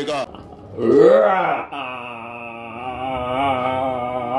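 A man's loud, deep vocal cry about a second in, rising then falling in pitch, followed by a long, slightly wavering chanted vocal tone that holds on.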